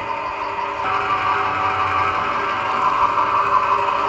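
Stainless-steel home screw oil press running steadily while pressing almonds, its electric motor and screw giving a continuous hum. A higher tone in the hum grows stronger about a second in.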